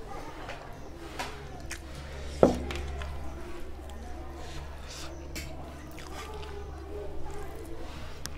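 Eating rice and dal by hand: soft wet squishing of rice mixed with the fingers and scattered mouth and chewing sounds. About two and a half seconds in there is one sharp knock with a brief ring, a ceramic bowl set down on the table. A steady low hum runs underneath.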